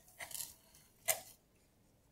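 Faint crunch and rustle of coarse sand and leaves as a begonia leaf cutting is worked into a sand-filled metal bowl: two short soft sounds, the sharper one about a second in.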